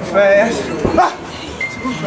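A voice giving short, high yelping calls, one sliding sharply upward about a second in, over music.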